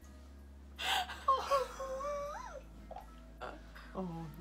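A young woman's whimpering wail of dismay: a breathy gasp about a second in, then a high wavering cry that rises and falls for about a second and a half, without words.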